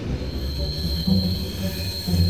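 Train wheels squealing against the rails, a steady high-pitched squeal that starts just after the beginning, over the low rumble of the moving carriage.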